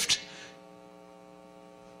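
Steady electrical mains hum with a row of evenly spaced overtones; the echo of a spoken word dies away in the first half-second.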